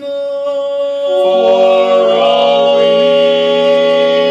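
Men's voices singing a cappella in close harmony, holding a long sustained chord; more voices join the held note about a second in and fill out the chord.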